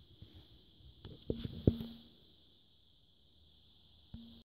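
A few light knocks and clicks about a second in, the loudest one near the middle, over a faint steady high hiss.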